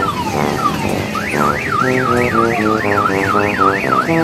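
Electronic siren sound effect and beeping tune from a kiddie train ride's loudspeaker: a few falling whistle sweeps, then from about a second in a fast up-and-down siren warble, about three cycles a second, over a simple stepping melody.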